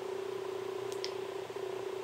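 A steady low hum, with a faint high tick about a second in.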